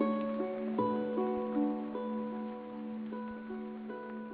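Background music: a plucked-string instrumental with a steady held low note under short picked notes. It grows gradually quieter over the last couple of seconds.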